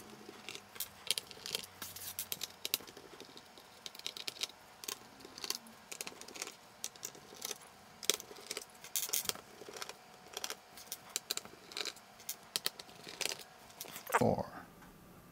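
Quiet, irregular clicks and ticks of a cross-headed screwdriver working the small screws out of a laptop's plastic back panel, with small screws being set down on a hard desk.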